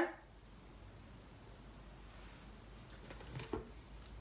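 Quiet room tone, with a couple of soft clicks about three and a half seconds in.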